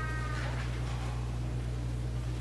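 A brief, high, falling squeak or mew about half a second long at the start, then a steady low hum under the quiet pause.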